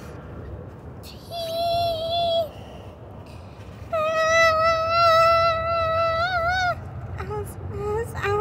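A child's voice singing long held wordless notes with no instrumental backing: a short one about a second in, then a longer one from about four seconds that wavers near its end, over a low steady hum.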